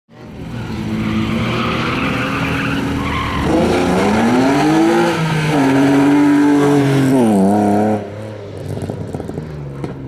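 BMW E36 race car's engine revving hard as it is driven through a tyre-marked course, its pitch climbing, dropping with a gear change, then climbing again, while its tyres squeal in the first few seconds. The sound falls away sharply about eight seconds in as the car moves off.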